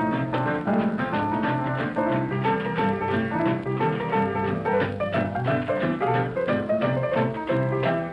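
Solo Texas blues piano playing an instrumental break between sung verses, with a steady rocking bass line under chorded right-hand figures.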